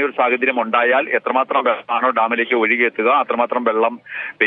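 A man speaking Malayalam in a news report heard over a phone line, with the voice thin and cut off in the highs.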